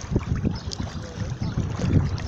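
Wind buffeting the phone's microphone, with river water sloshing and splashing around a swimmer's body in uneven surges.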